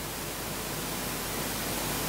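Steady hiss with a faint low hum: the background noise of the hall's sound system and recording.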